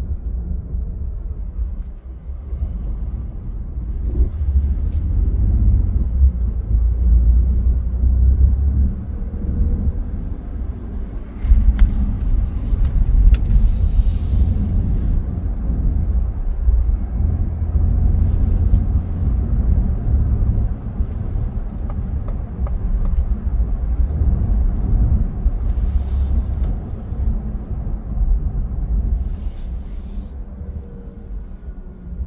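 Car driving in city traffic, heard from inside: a steady low rumble of road and engine noise that grows louder about a dozen seconds in, with a few brief hissing swells.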